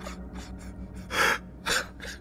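A person's sharp gasping breaths, a longer one about a second in and a shorter one just after, over a low steady hum.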